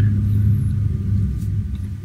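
A steady low rumble with a hum in it, fading gradually.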